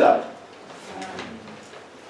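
A man's amplified speech trails off, then a pause of low room sound with only a faint, brief murmur about a second in.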